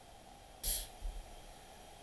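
A short, hissing puff of breath on a microphone about half a second in, followed by a fainter one about a second in.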